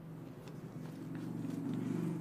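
A man's low, drawn-out closed-mouth "hmm", growing louder over about two seconds: a thinking sound.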